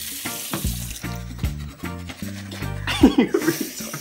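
A toothbrush scrubbing teeth close to the microphone, a gritty scratching noise, over background music with a steady bass line and a regular beat.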